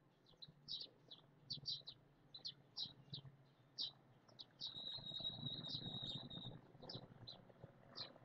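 Birds chirping in the background: short high chirps repeated irregularly, with one long steady high note lasting nearly two seconds about halfway through. A faint low rumble sits underneath at the same time.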